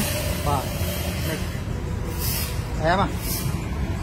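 A person's voice speaking briefly twice, about half a second in and again near three seconds, over a steady low hum.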